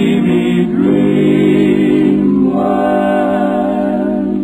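Male barbershop quartet singing unaccompanied close harmony, holding long chords without clear words. The chord shifts about a second in, and a higher voice swells in past the halfway point.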